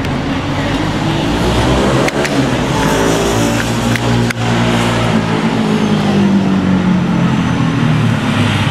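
A road vehicle's engine running loudly in passing traffic, rising in pitch as it accelerates and then levelling off. Two sharp clicks from the camera being fixed onto a tripod, about two and four seconds in.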